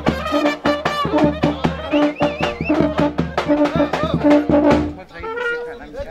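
Brass band with tuba and drum playing a fast dance tune with a regular beat, steady bass and a wavering, ornamented melody line. The music stops about five seconds in, leaving crowd chatter.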